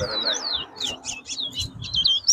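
Towa-towa (chestnut-bellied seed finch) singing a fast run of short whistled notes that sweep up and down, about four a second.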